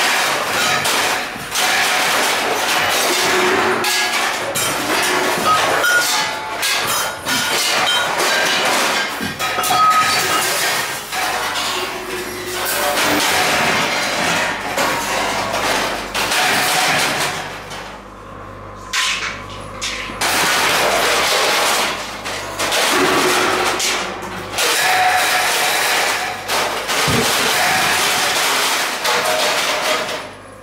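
Live noise performance: a dense, continuous din of metal objects being struck, scraped and dragged, with many overlapping knocks and clanks. The din drops away for a couple of seconds about eighteen seconds in, leaving a low steady hum, then starts again.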